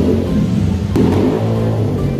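Motorcycle engine running close by and revving, rising about a second in.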